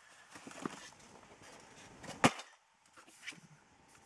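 Cardboard box and packing being handled: faint rustling and small knocks, with one sharp knock about two seconds in.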